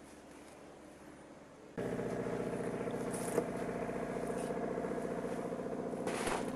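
An engine running steadily, cutting in abruptly a little under two seconds in after a faint low hum.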